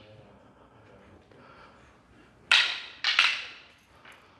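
Kali training sticks clacking together in a disarm drill: one sharp crack about two and a half seconds in, then two more in quick succession half a second later, each ringing briefly in the room.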